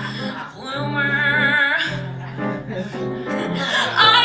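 A woman singing a show tune with live piano accompaniment, holding one note with vibrato about a second in before moving on through the melody.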